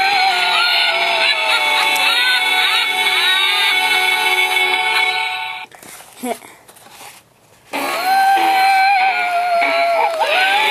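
A Halloween animatronic decoration playing eerie electronic music with a sliding, wavering synthetic voice. It drops out for about two seconds just past the middle, then plays again.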